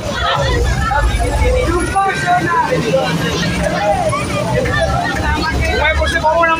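Low rumble of a moving bus's engine and road noise from inside the cabin, swelling and easing, with passengers chattering over it.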